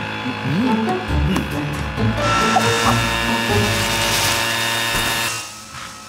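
Engine-driven leaf blower running with a steady buzzing drone. About two seconds in it grows louder with a strong rush of air, which cuts off shortly before the end.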